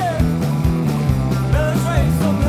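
Live rock band playing: distorted electric guitars, bass guitar and a drum kit, with a voice singing over them in sliding notes.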